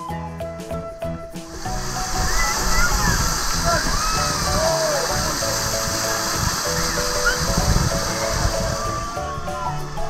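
Water park ambience: splashing, running water with children's voices calling and shrieking, rising about a second in and easing near the end. Background music plays throughout, heard on its own at the start.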